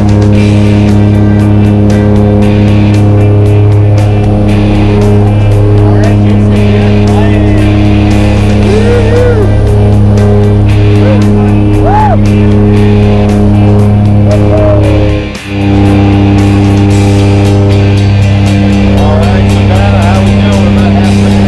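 Propeller jump plane's engine and propeller drone heard from inside the cabin: a loud, steady hum at one low pitch. It drops out briefly about 15 seconds in.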